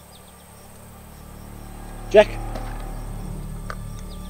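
A low, steady drone fades in about a second in and swells louder, over faint insect chirping; one short word is spoken about two seconds in.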